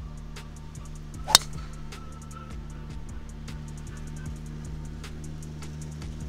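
A golf driver striking a teed ball: one sharp crack about a second in, the loudest sound, over steady background music.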